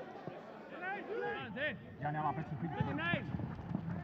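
Players on a football pitch shouting and calling to each other, several men's voices overlapping, faint, with no crowd noise under them.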